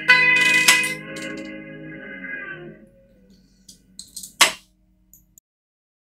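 A guitar's closing notes in the A minor pentatonic scale, ending on a strum that rings out and dies away over about three seconds. A few faint clicks follow, then one sharp click about four and a half seconds in.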